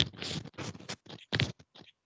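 Scratchy rustling noise in a series of short, irregular bursts.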